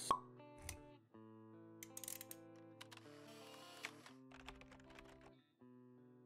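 Quiet logo-intro music of soft held tones, opening with a sharp pop sound effect and followed by a few light clicks.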